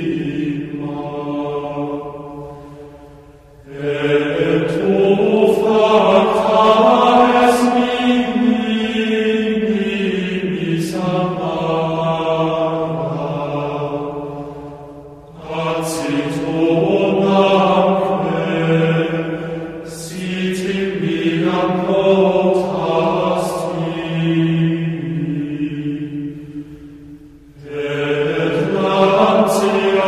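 Gregorian chant: voices singing long, slow, sustained phrases, each about ten seconds long, with brief breaths between them about three and a half seconds in, about fifteen seconds in and near the end.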